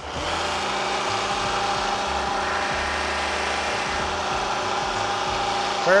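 Bridgeport vertical milling machine's spindle running steadily while a center drill cuts a hole in an aluminium block.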